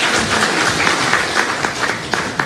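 An audience applauding: dense, steady clapping from a roomful of people.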